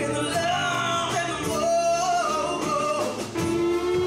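Live band of keyboard, electric guitar and drums playing a slow soul ballad, with a female lead singer holding long wavering notes. The vocal line ends about three seconds in, and a sustained electric guitar note comes in near the end.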